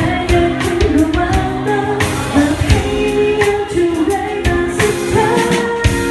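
A woman singing a pop ballad into a microphone with a live band, guitar and drum kit playing along.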